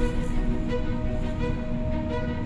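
Background music: held, steady tones with new notes entering at an even pace.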